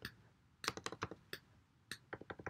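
Computer keyboard being typed on: separate key clicks, a quick run of about four just past the middle and single presses before and after, as short colour values are typed in.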